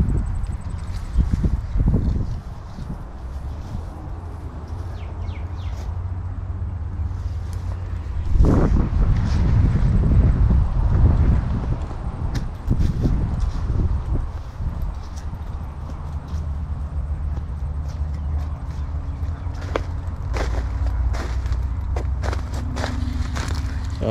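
Footsteps on orchard grass with scattered knocks and rustles, over a steady low rumble of wind or handling on the microphone.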